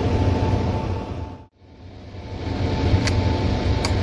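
Steady rushing hum of a laminar airflow cabinet's blower together with the gas burner's flame, cut off briefly about a second and a half in, with two light clicks of steel forceps against the glass petri dish near the end.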